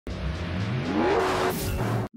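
Car engine accelerating, its pitch rising over about a second, with a short rush of hiss near the end.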